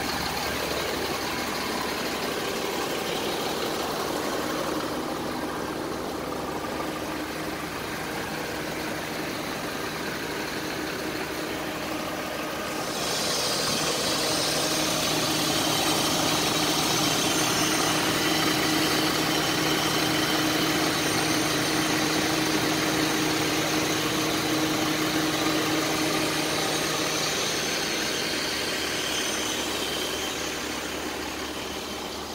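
Ford Transit van's engine idling steadily. It grows louder and brighter a little under halfway through, with the engine bay open, and eases off slightly near the end.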